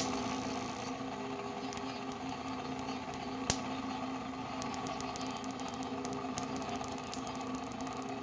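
Small fan motor of a homemade Van de Graaff generator running the belt with a steady hum. A single sharp snap about three and a half seconds in and a fast run of faint ticks near the end are small static sparks discharging from the charged dome.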